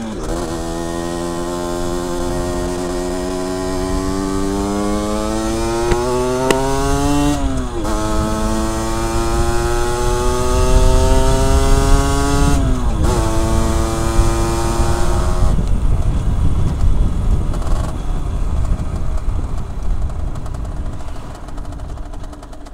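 Motorcycle engine accelerating up through the gears: the pitch climbs, drops at an upshift about seven seconds in, climbs again and drops at a second upshift about thirteen seconds in. It then holds steady before the throttle closes about fifteen seconds in, leaving a low wind rumble on the microphone.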